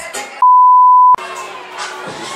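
A single steady electronic bleep, a pure high tone lasting under a second, with the club music cut out beneath it: the kind of bleep dubbed in to censor a word. Pop club music plays before and after it.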